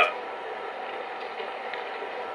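Steady hum from a Lionel O-gauge model train's electronic sound system, held even between the recorded station announcements.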